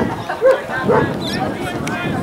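Players' shouts and calls carrying across an open rugby field, with two short, sharp calls about half a second and a second in.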